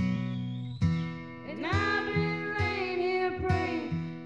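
Two women singing karaoke into handheld microphones over a guitar backing track. The voices drop out briefly early on and come back in about one and a half seconds in.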